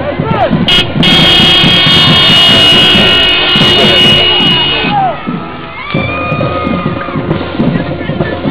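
A horn sounds one long, loud, steady blast from about one second in until about five seconds, over a marching drum beat and crowd voices; a second, weaker steady tone sounds briefly about six seconds in.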